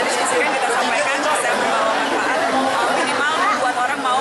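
Speech with overlapping crowd chatter: several people talking at once in a packed group.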